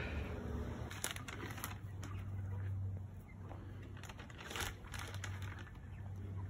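Faint crunching and rustling in dry leaf litter, with a few sharper crackles about a second in and again near the end, over a low steady rumble.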